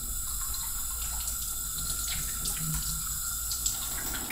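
Water running steadily from a single-lever kitchen faucet into a stainless steel sink as hands are rinsed under the stream.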